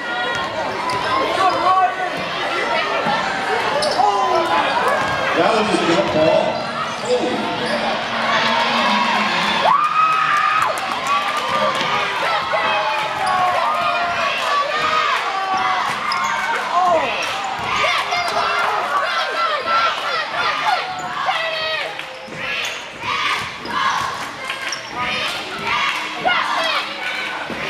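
A basketball bouncing on a hardwood gym floor as players dribble it, with the many voices of a crowd talking and calling out throughout. The sharp bounces are plainest in the second half.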